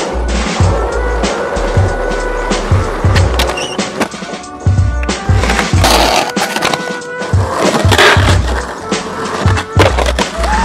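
Skateboard trucks grinding on a ledge, with wheels rolling and clacking, over a music track with a steady beat. The grinding is loudest about six seconds in and again about eight seconds in.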